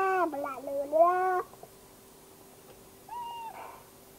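A young child's high-pitched, drawn-out vocalising, sing-song with rising and falling pitch, stopping about a second and a half in. A short, higher-pitched sound follows near the end.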